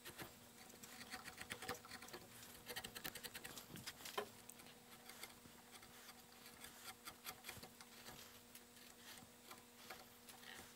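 Faint, irregular small clicks and scratches of a deep U-shaped hand gouge (Stich 11, 6 mm) paring shallow cuts in lime wood, with a couple of slightly louder snicks about four seconds in. A faint steady hum runs underneath.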